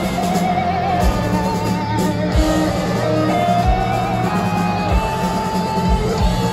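A heavy metal band playing live. A lead electric guitar plays a slow melody of long held notes with vibrato over the band, with a drum hit about every second and a half.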